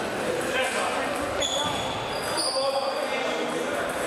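Table tennis rally: the ball clicking off bats and the table in a series of quick hits, in a large hall over a murmur of voices.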